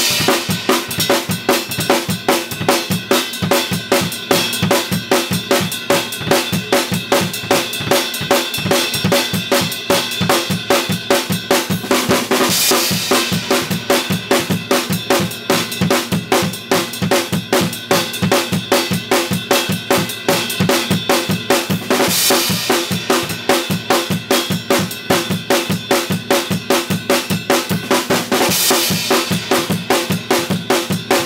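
Acoustic drum kit played in a steady, unbroken groove of bass drum and snare at about 150 beats per minute, with three louder cymbal hits spread through. It is a stamina and timekeeping exercise in the tempo of gospel church songs, played without a metronome.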